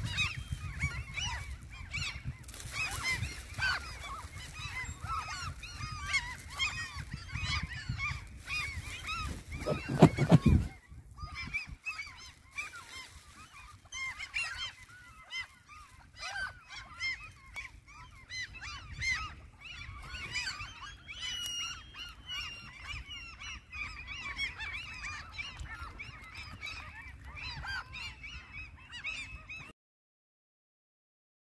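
A flock of waterfowl calling continuously, many short overlapping calls, with wind rumbling on the microphone for the first ten seconds and a short laugh about ten seconds in. The sound cuts off just before the end.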